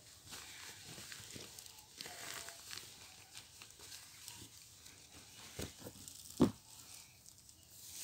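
Faint rustling of clothes being handled and folded, with soft crinkling of a plastic bag, and a couple of short knocks in the second half, the louder one about six and a half seconds in.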